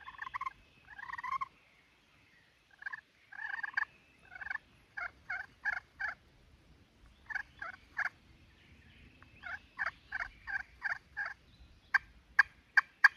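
Turkey pot call, a slate-over-glass surface in a cherry pot, worked with a wooden striker: soft yelping notes in four short runs with pauses between. The slate surface is slick enough that the owner reckons it could use a little roughing.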